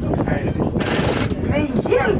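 People talking quietly close by, with a short burst of hiss, about half a second long, about a second in.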